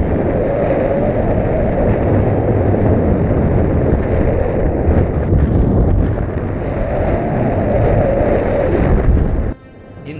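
Strong wind howling across the microphone of a selfie-stick action camera in tandem paraglider flight: a loud, steady rush of wind noise with a heavy low buffeting. It cuts off suddenly near the end.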